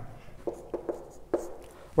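Marker pen writing on a whiteboard: a handful of short, faint scratching strokes as figures are written.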